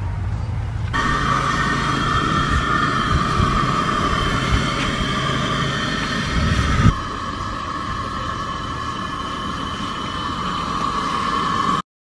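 Steady outdoor background noise with a continuous high-pitched drone; it shifts slightly about seven seconds in and cuts off just before the end.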